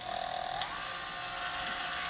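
Red KitchenAid stand mixer switched on: the motor spins up with a whine that rises for about half a second, then runs steadily at medium-low speed with the dough hook turning in dry flour. There is a single click about half a second in.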